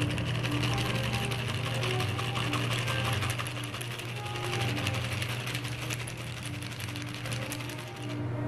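A cocktail being strained from a metal shaker into a glass: a steady, fizzy trickling stream over background music.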